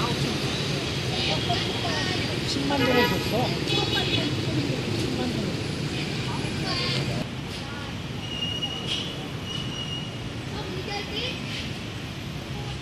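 City street traffic with a steady low hum and horns tooting, under the chatter of people nearby; two short high toots sound in the last third.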